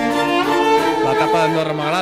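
Background music: violin and other bowed strings playing long held notes.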